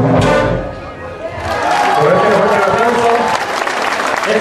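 A wind band ends its piece on a final brass chord that dies away over about a second, then the audience breaks into applause, with voices calling out over it.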